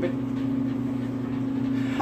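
A steady low mechanical hum with two constant low tones, unchanging throughout.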